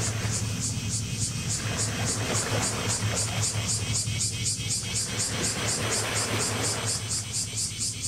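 Steady low engine hum of a passing warship, the destroyer escort Tone, with a high rhythmic pulsing of about four or five beats a second running above it.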